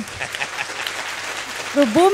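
Studio audience applauding: a steady patter of many hands clapping. A woman's voice starts speaking again near the end.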